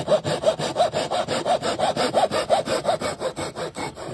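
Hand saw cutting through a wooden dowel in a saw guide: quick, even back-and-forth strokes, several a second, lighter toward the end.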